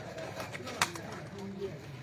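A sepak takraw ball being kicked: a sharp knock a little under a second in, with a couple of fainter taps before it. Faint distant voices and bird calls sound underneath.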